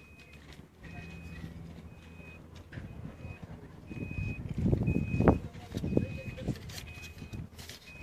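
A short, high electronic beep repeating about once a second, like a warning or reversing alarm. Around the middle, a low rumble with a sharp knock a little after five seconds.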